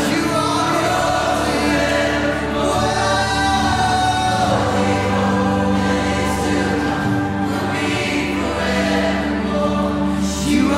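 Live worship music: a male lead vocalist sings long, gliding lines over sustained held chords, with a group of voices singing along.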